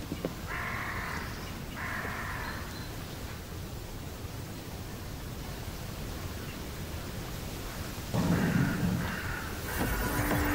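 A crow cawing twice in the first few seconds over a steady low outdoor rumble; a louder sound comes in near the end.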